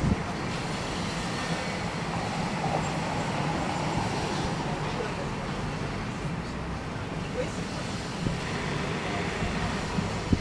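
Street ambience: a steady hum of road traffic with a low rumble, and faint voices of passers-by.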